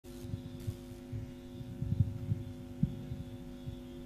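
Steady electrical hum from a live microphone and sound system, with scattered soft low bumps from the handheld microphone being handled.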